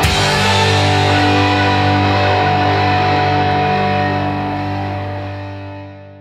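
The closing chord of a rock song, struck once on guitar and bass and left to ring out. It holds steady, then fades away over the last couple of seconds.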